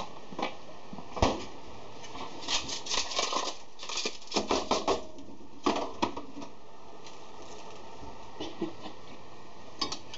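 Light metallic clinks and taps of a utensil against an enamel saucepan, in quick irregular bunches through the first half and then sparser.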